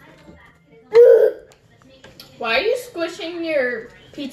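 A person's voice: a short, sharp vocal sound about a second in, then a longer run of wordless vocalizing whose pitch rises and falls.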